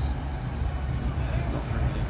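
A low, steady outdoor rumble of street background noise, with no speech.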